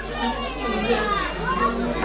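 Several children's voices chattering and calling over one another, as children do at play.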